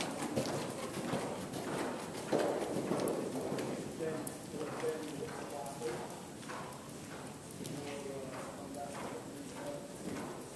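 Hoofbeats of a ridden Thoroughbred gelding on the sand footing of an indoor arena, loudest in the first few seconds and fading as the horse moves off along the far side.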